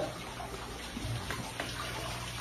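Water running steadily into an enclosure pool from a small waterfall outlet, under a low steady hum.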